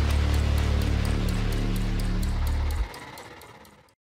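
Outro logo sting: a deep bass hit rings on as a heavy low rumble with faint regular ticks on top. It drops off sharply a little under three seconds in, then fades out.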